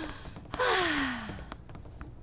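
A woman's long, breathy sigh, falling in pitch, starting about half a second in and lasting about a second, after a brief voiced 'ah' at the very start.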